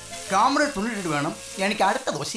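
Food sizzling in a frying pan, with a voice speaking loudly over it from about a third of a second in and music underneath.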